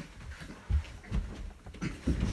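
A few dull thumps and scuffling of feet and bodies on a carpeted floor as one person hoists another up for a wrestling slam.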